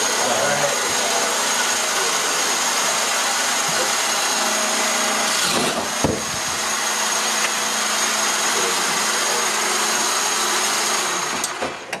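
Electric motors of a wheeled shooter prototype, geared 10:1, spinning its shooter wheels with a steady high whine. About halfway through the sound sags briefly and a sharp knock is heard as a Power Cube goes through the wheels; the motors cut off near the end.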